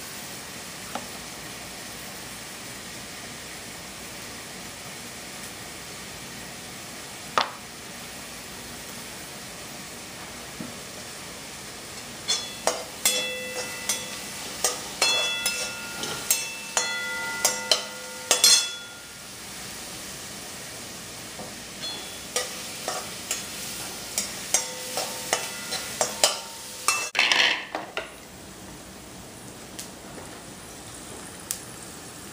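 A steel spoon stirring in a steel kadai, with sharp ringing clinks in two spells in the second half, over the steady sizzle of onions, ginger and garlic frying in oil.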